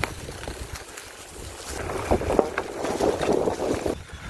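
Mountain bike riding over a dry, leaf-covered dirt trail: tyre noise and crackle with scattered small knocks, growing louder about halfway through, and wind rumbling on the microphone.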